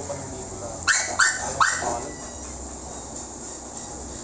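A dog giving three short, sharp barks in quick succession about a second in.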